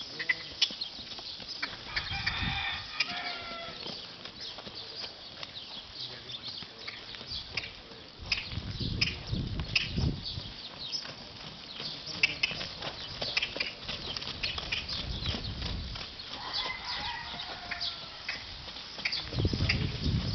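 Horse's hooves trotting on a sand arena floor, a steady run of soft strikes and knocks. A rooster crows in the background early on and again near the end.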